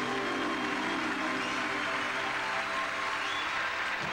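Studio audience applauding steadily, with faint held band notes underneath.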